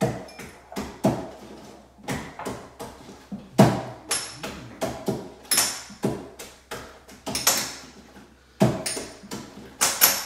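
Irregular knocks and clinks of dishes and kitchen utensils being handled on a countertop, a few a second, some ringing briefly after the strike.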